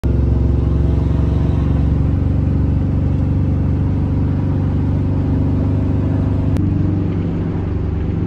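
Steady engine drone and road noise inside a truck's cab while cruising at highway speed, with a slight change in tone about two-thirds of the way in.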